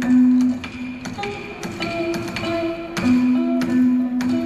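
Ca trù music: long held notes with plucked đàn đáy lute, and the sharp, irregular clicks of the phách clapper being struck with sticks, several a second.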